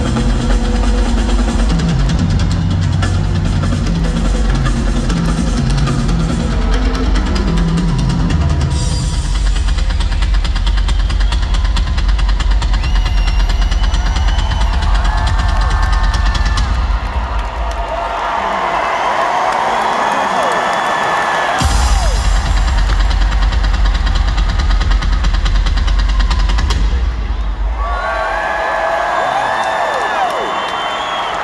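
Live rock drum solo on a full kit through an arena PA: steady kick drum under fast tom rolls. The low end drops out briefly about two-thirds through, as a burst of crowd cheering rises, and the cheering swells again near the end.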